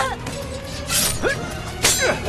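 Film soundtrack music with two sharp crashing impacts, about a second apart.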